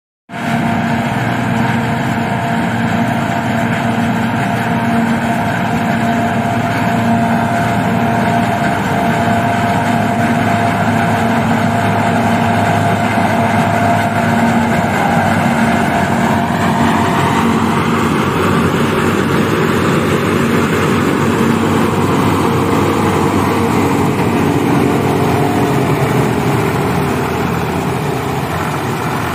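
New Holland FX28 forage harvester running under load as it chops standing maize and blows it into a trailer, a loud, steady engine and cutter drone with a steady whine over it. The tone shifts about two-thirds of the way through.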